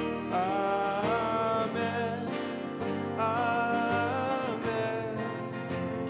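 Worship song with singers holding long notes on a repeated 'Amen' refrain, over strummed acoustic guitars and piano.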